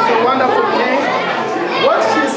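Speech: people talking, several voices at once.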